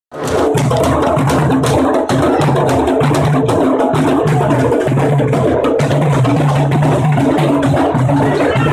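Candombe drums played by a street drum group: a steady, driving, interlocking rhythm of deep pitched drum tones and sharp stick strikes.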